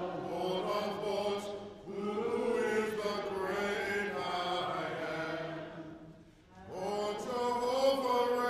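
A man's voice singing or chanting slowly into a microphone in long held notes. It breaks off briefly about two seconds in and again for a longer pause around six seconds.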